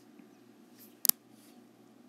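A single sharp click about a second in, over quiet, steady room noise.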